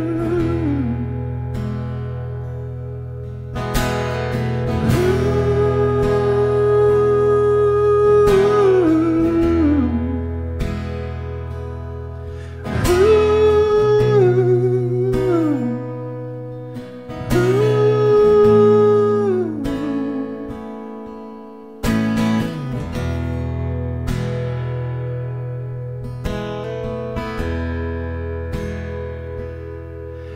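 Acoustic guitar (a Martin OM-28e Retro) playing ringing chords, with a wordless hummed vocal line over it: long held notes that slide down in pitch, several times over.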